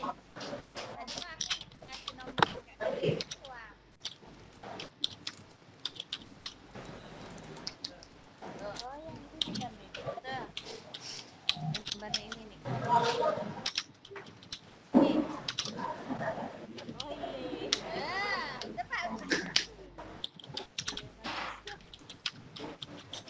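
Irregular clicking of computer keyboard typing, coming through a video-conference line, with faint indistinct voices in between.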